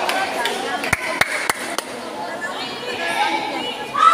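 Voices chattering in a large, echoing sports hall, with four sharp taps in quick succession about a second in.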